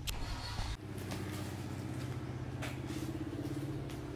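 A motor vehicle's engine idling steadily, a low even hum with a fast flutter.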